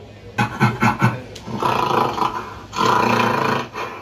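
Gorilla roar sound effect from a video logo intro, played through studio monitor speakers: a few low thumps in the first second, then two long roars of about a second each.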